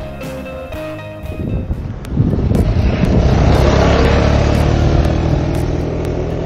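Guitar background music that gives way about a second and a half in to a loud, steady rushing rumble, heaviest in the low end: wind buffeting the action camera's microphone outdoors.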